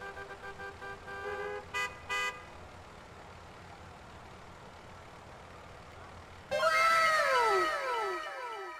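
Street ambience with traffic and car horns: held horn tones and two short toots about two seconds in, then a low steady traffic background. About six and a half seconds in, a louder shimmering chime effect starts, a cascade of repeated falling tones.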